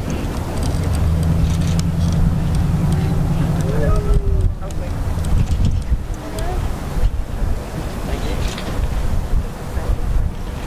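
Wind buffeting an outdoor microphone: a heavy, gusting low rumble, with faint voices in the background.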